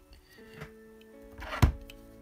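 Soft background music with long held notes, and one sharp click about one and a half seconds in as the plastic chassis parts are handled.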